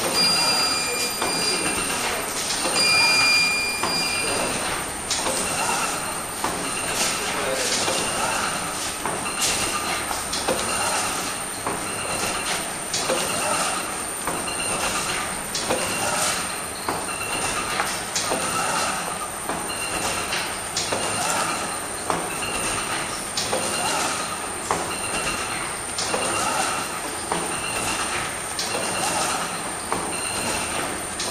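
Medical sterilization reel and pouch bag making machine running, its seal press and cutter cycling with a repeated clack about once a second over a steady high-pitched whine.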